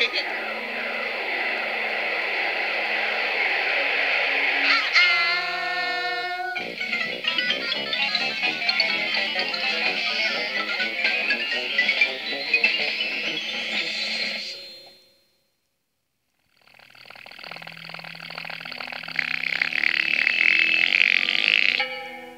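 Children's TV soundtrack music with sparkling sound effects and notes that sweep up and down. The sound cuts out for about a second and a half past the middle, then the music comes back in.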